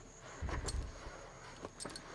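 Faint handling noise of a plastic jar in a steel pot of warm water: soft low bumps about half a second in, a light click, and a faint tick near the end.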